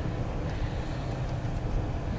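Steady low rumble of a van driving slowly on a snow-covered street, heard from inside the cabin: engine and tyre noise.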